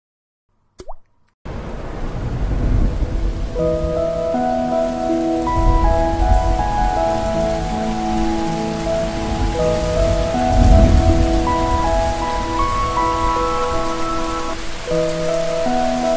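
Steady heavy rain with low rolls of thunder swelling a few times, starting about a second and a half in. Soft ambient music of slow, held notes plays over it from about three and a half seconds in.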